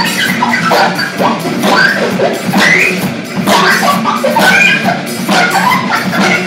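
Free-improvised electronic jazz played live on electric cello, synthesizers and drum kit: sliding, bending high pitches over a steady low drone, with scattered drum strikes.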